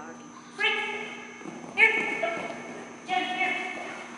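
A dog barking three times, a little over a second apart. Each bark rings on and fades in a large echoing hall.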